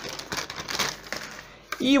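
Thin cellophane wrapping crinkling as a router is pulled out of it, dying away after about a second and a half.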